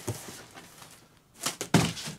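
An empty cardboard box is tossed down and lands on the floor: a quick cluster of thunks and knocks about one and a half seconds in as it hits and settles.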